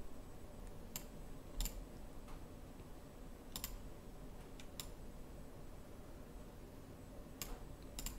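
Faint, sparse clicks of a computer mouse and keyboard: about six single clicks at irregular intervals, while a 3D modeling program is worked.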